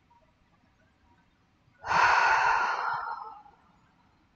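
A long, audible sigh: one breath let out, starting suddenly about two seconds in and fading away over about a second and a half.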